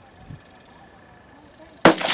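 A single shot from a Stag Arms 6.8 SPC AR-style semi-automatic rifle near the end, sudden and by far the loudest sound, after a low background.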